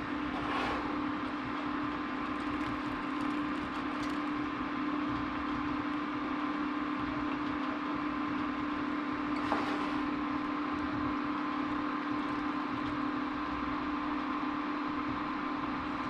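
Steady mechanical hum with one low tone over a fan-like whoosh, at an even level, with a couple of faint soft knocks, one just after the start and one a little past the middle.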